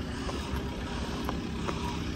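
Diesel engine of a JCB telescopic forklift running steadily, a low even rumble with a faint hum.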